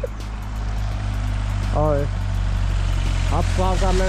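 A steady low rumble, with short snatches of people talking over it.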